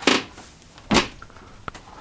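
Two brief rustling noises about a second apart, with a faint click near the end.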